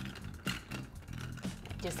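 A barspoon pushing large ice cubes down a tall, narrow glass of iced tea: a few light, scattered clinks of ice and metal against glass, over soft background music.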